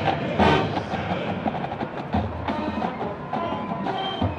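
College marching band playing a western-themed piece: a loud full-band hit about half a second in, then a quieter passage of percussion under a held brass note.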